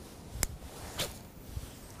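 Two short clicks about half a second apart against a faint, even background hush.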